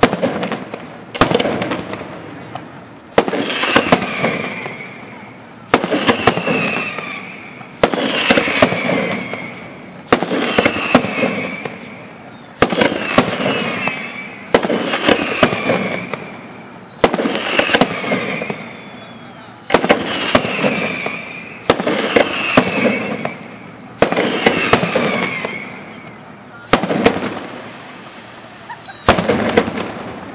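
Aerial firework shells bursting one after another, a sharp bang about every two seconds, each followed by crackling that fades before the next. A thin whistle sounds near the end.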